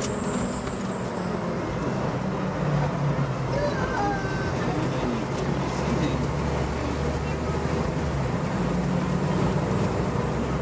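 Diesel engine of a 2014 Seagrave Marauder fire engine running steadily under way, heard from inside the cab along with road and tyre noise.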